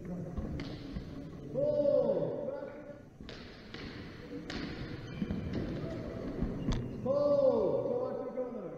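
Longsword sparring in a large hall: sharp knocks of steel training swords and footsteps on the wooden floor during the exchange, between two loud shouted calls about a second and a half in and near the end. The second call comes as the referee stops the bout.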